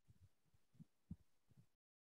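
Near silence: faint room tone with a few soft low thumps, then the sound drops out completely near the end.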